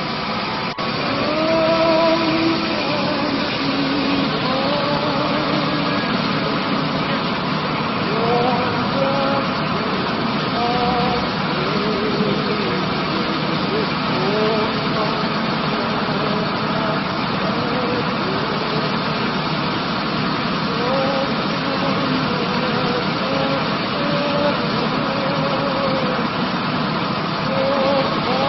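A large vehicle's engine idling steadily, with indistinct voices talking in the background.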